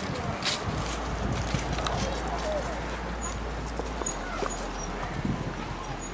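Children's voices chattering in the background over outdoor ambience, with a steady low hum underneath.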